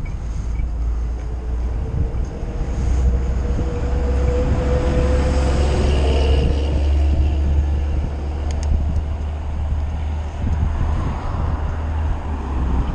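Steady low rumble of wind and road noise on a moving e-bike's camera microphone. A city bus runs close ahead, and the sound swells in the middle with a faint steady engine whine.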